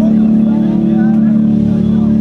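A steady, loud electric guitar drone held through the stage amplifiers between songs, with faint crowd chatter.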